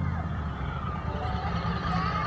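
Steady low rumble of a car's engine and tyres on pavement while driving slowly.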